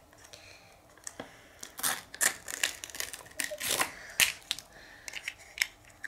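Foil wrapping crinkling and tearing as it is peeled off a small plastic toy surprise capsule, with irregular sharp clicks of the plastic shell being handled.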